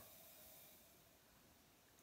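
Very faint fizzing of effervescent hydrogen tablets dissolving in a glass jar of water, tiny bubbles rising as the magnesium reacts with the tablets' acids and releases hydrogen gas. It fades a little in the first second, barely above room tone.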